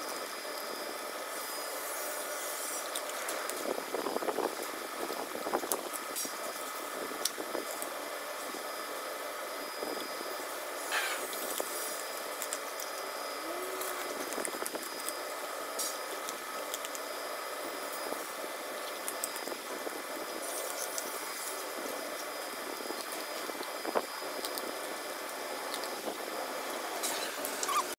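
A Rottweiler chewing and crunching raw turkey necks, cracking the bones: irregular sharp cracks and wet chewing noises.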